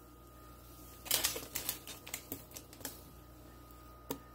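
A spoon stirring thick cream of wheat, knocking and scraping against the pot in a quick run of about a dozen clicks from about one second in to nearly three seconds in.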